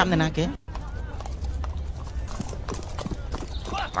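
Horse hooves clip-clopping on hard ground over a low steady rumble, starting after a sudden break about half a second in.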